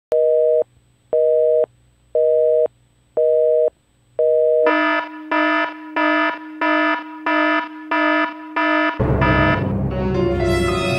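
Telephone busy-signal tone beeping five times, once a second, then a different, buzzier electronic beep repeating about twice a second. Music starts near the end.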